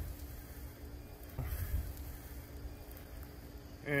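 Low rumble of wind and handling on the microphone, with a faint steady hum underneath; it swells briefly near the start and again about a second and a half in.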